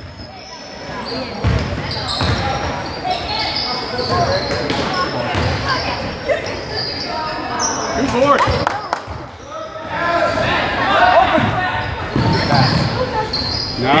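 A basketball bouncing on a hardwood gym floor at irregular intervals, amid shouting and chatter from players and spectators, echoing in a large hall.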